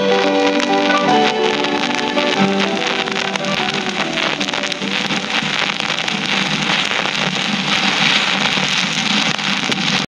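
The last notes of a 1970s pop song on a 45 rpm vinyl single fade out over the first few seconds. Steady record-surface hiss and a dense crackle of clicks from the worn vinyl follow.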